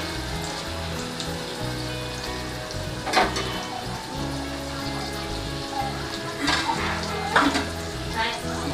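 Chopped onions and garlic sizzling as they fry in hot oil in a pan, with a few short scrapes or knocks of the stirring spoon against the metal.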